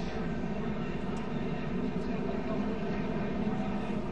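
Steady drone of a field of NASCAR stock-car V8 engines running at speed, heard through the TV broadcast's track audio, with no crash impacts standing out.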